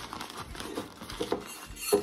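Crinkling and rustling of a piping bag as it is handled and its top twisted shut, with a few small handling clicks.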